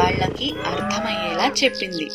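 A single long, low animal call lasting nearly two seconds, with its pitch arching up and then down, over quiet background music.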